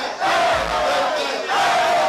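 Live hip-hop performance: shouted rap vocals through a microphone and PA over a beat with deep bass hits about a second apart, with crowd voices shouting along.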